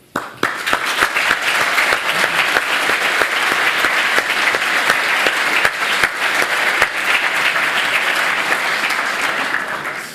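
Audience applauding: many hands clapping in a dense, steady patter that starts all at once and tapers off near the end.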